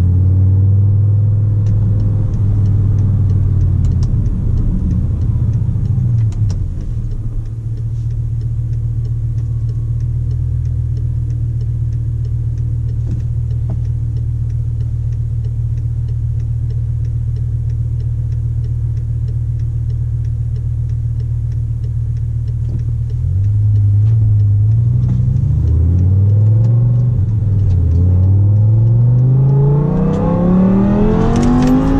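BMW M5 E60 V10 with a G-Power bi-supercharger conversion, heard from inside the cabin. It runs at low, steady revs while the car rolls slowly. From about 23 s in, the revs rise and dip a few times, then climb steeply as the car accelerates hard near the end.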